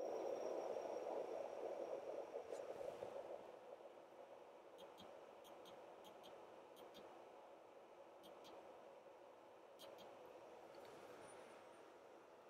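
Near silence with faint handling sounds: a soft rustle for the first few seconds, then scattered faint clicks as the oscilloscope controls are worked to change the time base.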